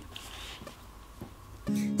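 Quiet room tone with a couple of faint clicks, then acoustic guitar playing starts near the end as the song begins.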